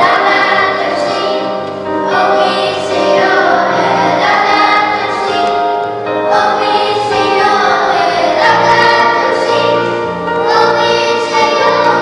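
Church choir singing a hymn in phrases of about two seconds each, over steady low held notes.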